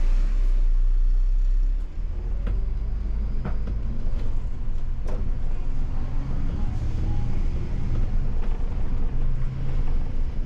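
MAN Lion's City city bus engine heard from the driver's cab, pulling away and accelerating with a deep rumble and a slowly rising pitch. A few sharp rattles or knocks from the bus body come through it.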